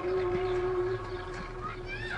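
A man's voice holding one long, steady, drawn-out note that ends about a second in, with a quieter rising voice near the end.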